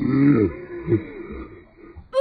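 A man's voice making low, wordless vocal sounds: one drawn-out sound at the start and a shorter one just under a second in.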